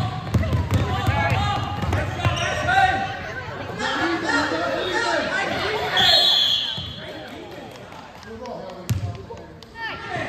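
Basketball dribbled on a hardwood gym floor under overlapping shouts and chatter from players and onlookers, echoing in a large hall. A brief high squeal comes about six seconds in, and a sharp thud near the end.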